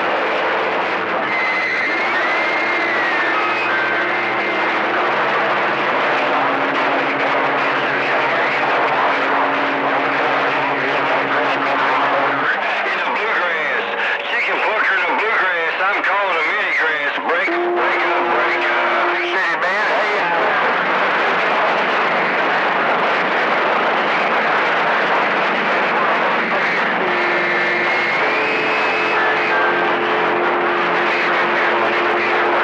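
CB radio receiver tuned to channel 28 (27.285 MHz) picking up long-distance skip: a constant wash of static with steady heterodyne whistles and garbled, unintelligible voices from distant stations. Through the middle the sound turns wavering and warbly.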